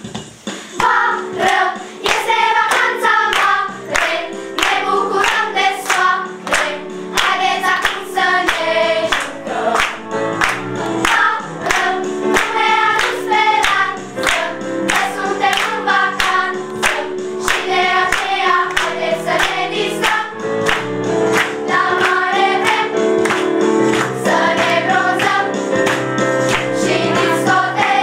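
A group of girls singing a children's song together over instrumental accompaniment, starting about a second in. Hands clap along steadily on the beat, about two claps a second.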